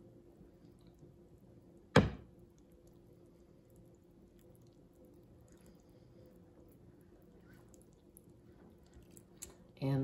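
Quiet room with a faint steady hum, broken once by a single sharp knock about two seconds in.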